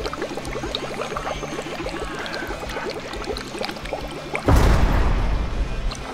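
Glass water bong bubbling in quick, continuous gurgles as a dab is inhaled through it. About four and a half seconds in, the bubbling gives way to a sudden loud rush of noise lasting over a second.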